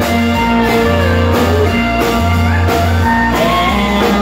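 A live band playing: strummed acoustic guitar and keyboard over drums and steady low bass notes, with a melody line that slides between notes.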